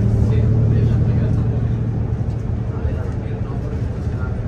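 Inside a moving city bus: the bus's engine and running noise make a steady low drone, loudest at first and easing slightly.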